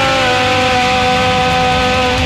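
Distorted rock music: a held distorted electric guitar note slides down in pitch at the start, then sustains steadily.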